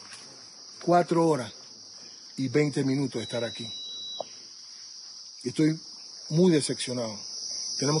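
Steady, high-pitched chorus of insects, running without a break under a man's intermittent speech.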